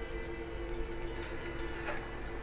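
A steady drone holding two low pitches over a faint hum, with a few faint ticks.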